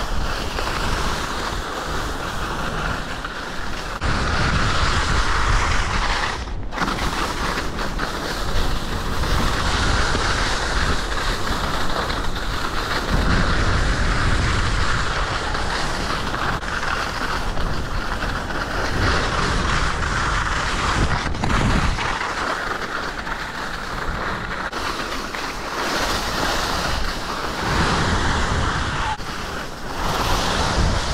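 Wind buffeting a camera microphone while skiing downhill, rumbling in gusts, over the steady hiss and scrape of skis running on packed snow.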